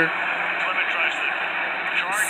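An NFL game broadcast playing from a television speaker: steady stadium crowd noise under faint commentary.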